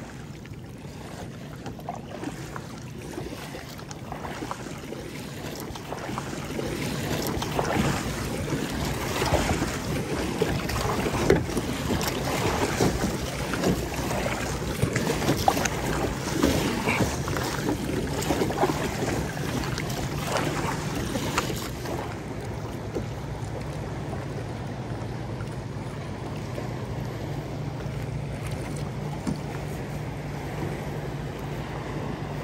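Water splashing and sloshing against the plastic hull of a sit-on-top kayak as it is paddled through light chop, with wind buffeting the microphone. The splashing grows busier through the middle and eases to a gentler wash in the last third.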